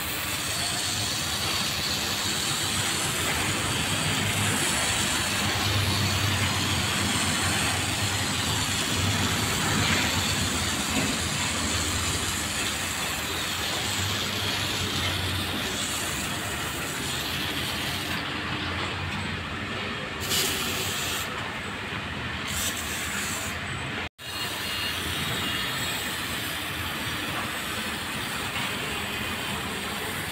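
Water spraying from a hand-pumped garden sprayer's nozzle onto a car's body, a steady hiss that cuts out for an instant about three-quarters of the way through.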